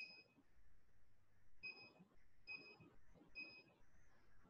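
Faint short high beeps from an LED gym interval timer as it is being set: one at the start, then three more about a second apart.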